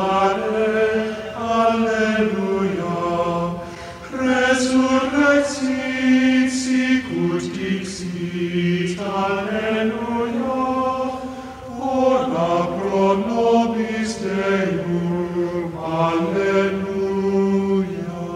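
Sung chant: long held vocal notes moving by small steps in pitch, in slow phrases with brief breaks about four and twelve seconds in.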